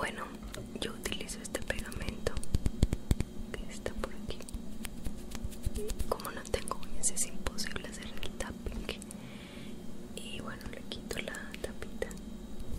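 Close, soft whispering into a binaural microphone, with frequent light clicks and taps from small objects handled right beside it.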